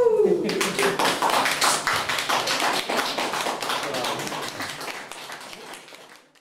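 Small audience applauding, the clapping starting about half a second in and fading away toward the end. Over the first second a person's voice holds a wavering note that dies out as the clapping begins.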